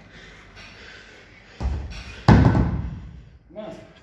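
Loaded barbell with bumper plates set down or dropped onto rubber gym flooring after a heavy deadlift: a heavy thud about one and a half seconds in, then a louder slam that rings away over about a second. A short breathy gasp from the lifter near the end.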